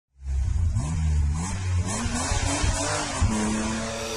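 Car engine revving, its pitch climbing in steps over a deep rumble and then holding steady near the end, with music.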